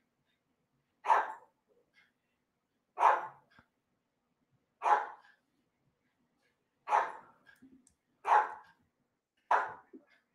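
A dog barking, six single barks spaced about one and a half to two seconds apart.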